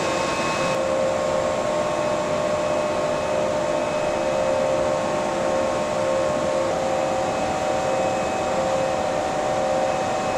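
Steady machine and air-handling noise of a battery production hall: an even blowing hiss with several steady hum tones. The mix of tones shifts slightly about a second in and again around two-thirds of the way through.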